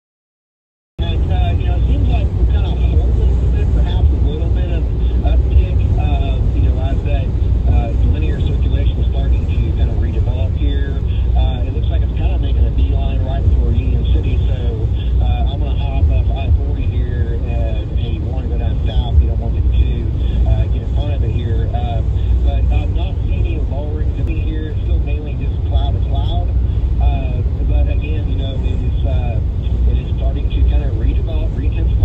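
Steady low road and engine noise inside a moving car, with indistinct voices talking throughout. It starts abruptly about a second in.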